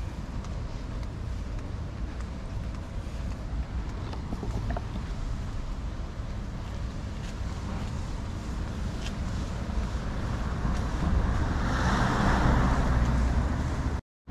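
Wind rumbling on a GoPro's microphone over street traffic noise, with a passing vehicle swelling and fading near the end.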